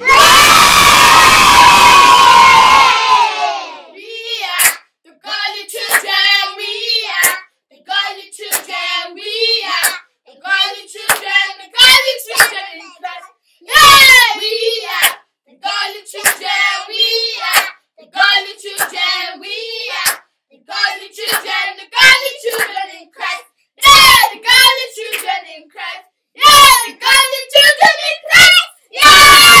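Children shouting and cheering with hand clapping. A loud burst of cheering dies away over the first few seconds, then short shouted phrases come one after another with brief gaps.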